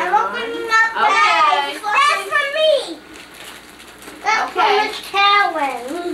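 Young children's voices talking in short stretches, with a brief lull a little after the halfway point.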